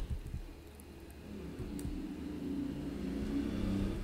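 A low rumble from an unseen background source, with a faint hum that grows stronger toward the end. Two faint clicks, about one and two seconds in, fit keyboard presses paging through router output.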